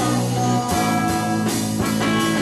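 A rock band playing live, drum kit and cymbals under held, chord-like tones that change about two-thirds of a second in.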